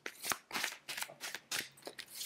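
A deck of oracle cards being shuffled by hand: a quick, irregular run of light clicks and flicks of card against card.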